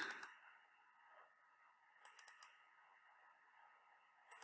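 Near silence with faint room hiss, broken about two seconds in by three quick computer mouse clicks.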